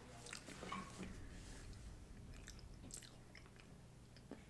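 Faint chewing of food close to a microphone: scattered soft mouth clicks over a low steady hum.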